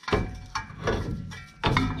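Milwaukee cordless ratchet running in uneven pulses, motor whirring with clicking, as it cracks loose the 11 mm banjo bolt on the rear brake caliper's hose.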